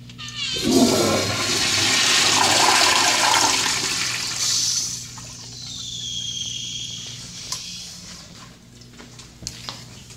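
A 1985 American Standard Afwall flushometer toilet flushing. A sudden loud rush of water starts about half a second in and lasts about four seconds, then eases into a quieter flow with a high whistle that fades out after about eight seconds.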